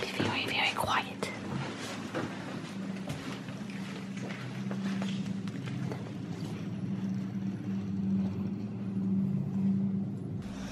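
Inflatable vinyl pool float rustling and crinkling as it is handled, with whispering, over a steady low hum.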